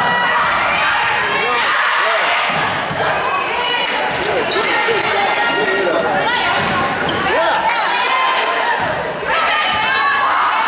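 Volleyball rally on a hardwood gym court: the ball struck several times with sharp smacks, sneakers squeaking on the floor, and voices calling out in the large hall.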